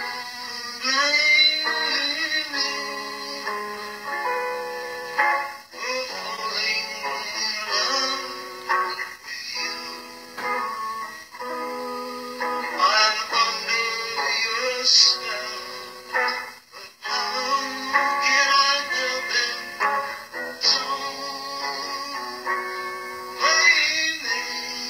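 A man singing a pop song into a microphone, his voice gliding over steady held backing chords.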